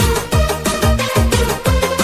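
Fast electronic DJ dance remix, with a driving kick drum at about three beats a second under a sustained synth melody.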